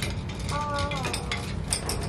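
Clothes hangers with gold metal hooks and clips clinking and rattling against each other and the closet rod as a bundle of them is lifted off. About half a second in, a short high sound falls in pitch for just under a second.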